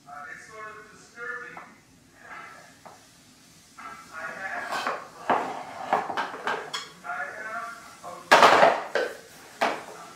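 Baby babbling in short high-pitched vocal sounds, mixed with wooden toys knocking and clattering as a wooden ball-drop box and balls are handled; the loudest clatter comes about eight seconds in.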